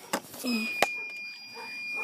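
A few sharp knocks or taps, the loudest just under a second in. A steady high-pitched tone begins about half a second in and holds without changing.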